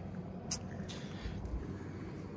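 A single short spritz from a hand trigger spray bottle about half a second in, over a steady low background hum, with a dull low bump near the middle.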